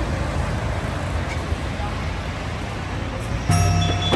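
Busy street ambience: a steady wash of road traffic and crowd chatter. About three and a half seconds in, background music with a strong bass line comes in over it.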